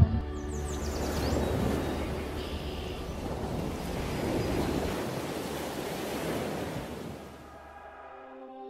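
Ocean surf washing in swells that rise and fall every couple of seconds, then fade away near the end, with faint music underneath.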